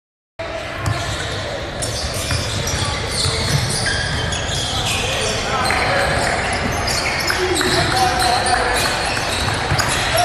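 Basketball being dribbled and bouncing on a court during a game, with a run of short knocks, under background voices of players and onlookers. The sound cuts in after a half-second gap at the start.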